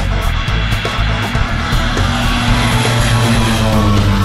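Background rock music with guitar, mixed over the steady drone of a propeller aircraft's engines.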